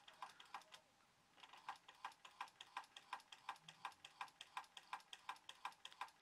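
Faint, rapid mechanical clicking, about five clicks a second, from the synchronous motor and gear train of a Sangamo Weston S317.1.22 time switch just after power-up. The mechanism is faulty: it is turning back and forth instead of rotating in one direction only.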